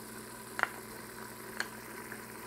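A wooden spoon scraping tomato paste out of a small glass bowl, with two light clicks about a second apart, over a faint steady hum.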